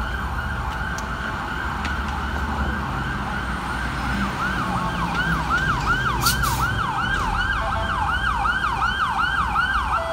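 Mount Sinai EMS ambulance siren in a fast yelp, sweeping up and down about twice a second and growing louder as it approaches, over a low rumble of city traffic. A brief hiss cuts in about six seconds in.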